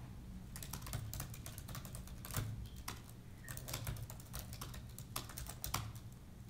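Typing on a MacBook laptop keyboard: a run of quick, irregular keystrokes that starts about half a second in and stops just before the end, over a faint steady low hum.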